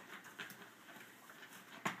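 Faint taps and knocks of a long cardboard box being handled, with one sharper knock near the end.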